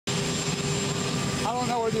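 Steady whine and rush of idling aircraft turbine engines, several high steady tones over a low rumble. A man's voice starts about one and a half seconds in.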